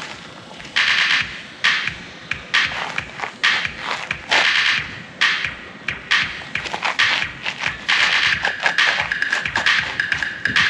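Hip-hop music playing from a boombox, starting suddenly about a second in, with sharp, punchy beat hits.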